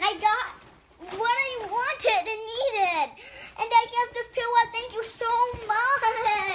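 Speech only: a young boy talking in a high voice in short phrases, the words unclear.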